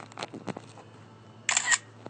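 Handling noise from a hand-held smartphone: a few light clicks, then a short, louder rustling scrape about a second and a half in, over a steady low hum.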